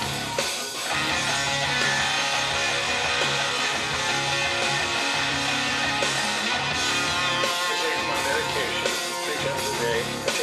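Rock song mix playing back: electric guitar solo over a steady bass line.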